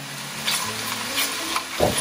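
Onions and Massaman curry paste sizzling gently in a pan as the paste warms up, while a spatula stirs them with a few light scrapes against the pan.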